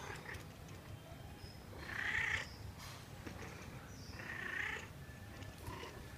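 Domestic cat meowing twice, short calls about two and a half seconds apart, the first the louder.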